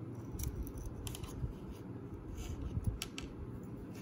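Masking tape being peeled off a painted plastic model part with metal tweezers: a handful of short, light crackles and ticks over low handling noise.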